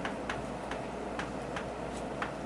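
Chalk tapping and scraping on a blackboard while writing: about six short, sharp clicks at an uneven pace, one per letter stroke.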